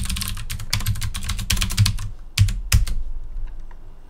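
Typing on a computer keyboard: a quick run of keystrokes for about two seconds, then two separate key presses and a few faint taps before it stops.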